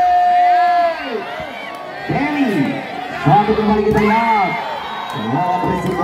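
A man shouting long, drawn-out calls over a volleyball rally, opening with one long held shout, with a crowd cheering and whooping underneath.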